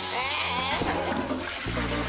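A strong jet of water sprays hissing and splashing from a hand-held shower head onto a person, over steady background music.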